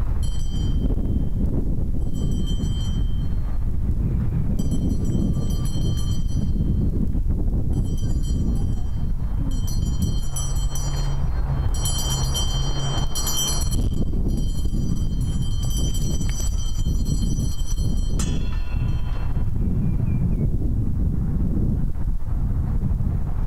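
Live percussion accompanying a dance: a snare drum played lightly with a ringing metallic jingle that comes in several bursts and fades out near the end, over steady wind rumble on the microphone.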